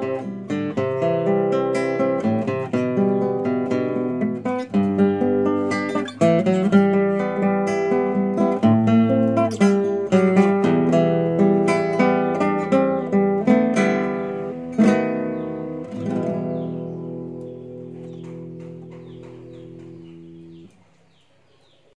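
Background music on acoustic guitar: a run of plucked notes, then a final chord about 16 seconds in that is left to ring and fade before cutting off near the end.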